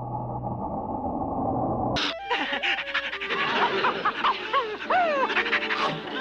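Cartoon dog vocalizing: Scooby-Doo panting and making eager, pitch-gliding dog sounds over background music. It begins after a muffled, dull stretch that cuts off about two seconds in.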